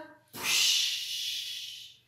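A woman blowing a long, breathy puff of air close to the microphone, the storyteller's sound of the wolf blowing the straw house down. It starts about a third of a second in and fades away over about a second and a half.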